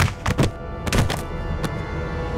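Film fight sound effects: a quick series of punch and body-impact thuds, about half a dozen in the first second and a half, over the background score.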